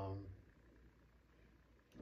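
A man's drawn-out "um" trailing off at the start, then near silence: faint room tone with a low hum.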